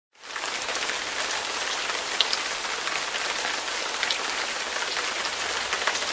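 Steady rain-like hiss with faint scattered ticks, starting abruptly at the very beginning.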